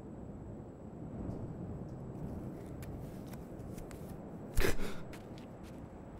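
A cardboard box being handled and opened: small scratching clicks of cardboard, then one loud, short rip about four and a half seconds in, over a low steady rumble of outdoor ambience.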